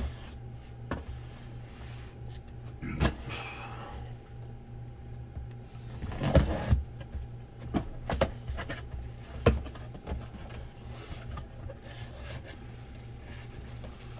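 Cardboard shipping case being opened and handled by hand: scattered scrapes and knocks of cardboard, the loudest a cluster about six seconds in.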